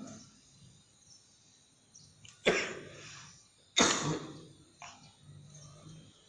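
A person coughing twice, about a second and a half apart, each cough sudden and trailing off.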